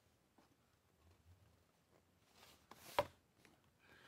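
Quiet handling of thick cardboard game-board pieces: faint rustling, then a single sharp tap about three seconds in as the board is knocked or set down.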